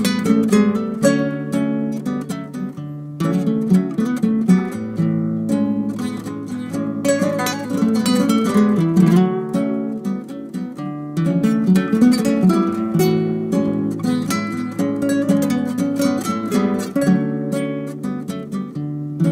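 Acoustic guitar playing, with rhythmic strummed chords whose harmony changes every second or two.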